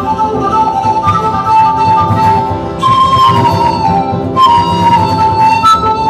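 A flute plays a folk melody with a few falling, sliding notes, over a strummed acoustic guitar.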